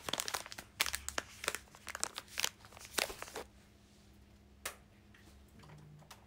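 Crinkling and crackling of a plastic wrapper being handled close to the microphone, dense for the first three and a half seconds, then quieter with a single click later on.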